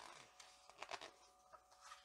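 Near silence: a few faint, brief rustles and soft clicks of a hardback picture book's paper pages being handled, over a faint steady hum.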